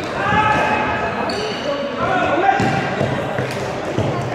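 Players' sneakers squeaking and pounding on a sports-hall floor during fast indoor play, mixed with shouted calls, all ringing in a large, echoing hall.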